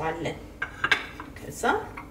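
A few sharp clinks of dishes about a second in, as a plate is set down and a small bowl is picked up beside the stove.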